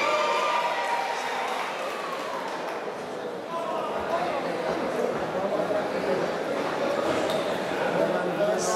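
Voices shouting at ringside during a boxing bout, several overlapping, with a few dull thuds from gloves and feet on the canvas.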